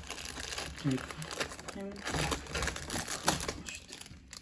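A small clear plastic bag of LEGO pieces crinkling as it is handled and drawn out of a cardboard advent calendar.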